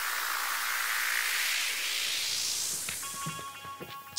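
A long electronic whoosh: a noise sweep with no notes or beat in it, swelling and then falling away over about three seconds. Steady synth notes of background music come back near the end.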